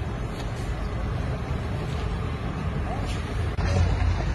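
Low, steady rumble of car engines in slow traffic, getting louder near the end, with voices faintly underneath.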